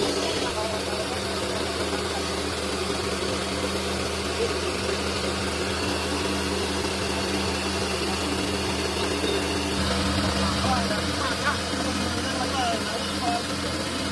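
Small home-use combined rice milling machine running steadily, its electric motor humming under a constant mechanical whirr while milled rice grains stream from the chute into a box.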